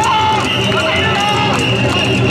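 Mikoshi bearers and crowd chanting the traditional "wasshoi, wasshoi" call in a mass of voices, with a high steady tone held over it.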